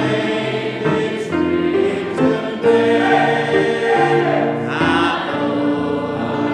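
A church congregation singing a hymn together, with sustained sung notes that change pitch every second or so.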